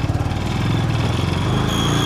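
A motorcycle engine idling steadily.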